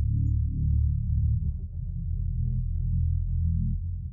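Isolated bass line of a pop song, alone with no other instruments or vocals: a run of low notes that change pitch every fraction of a second.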